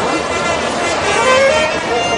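Wind band playing: saxophones and clarinets carry a moving melody over held chords.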